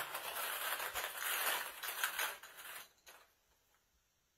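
A hand rummaging through lotto balls in a coin bag: the bag crinkles and rustles as the balls are stirred, then stops about three seconds in.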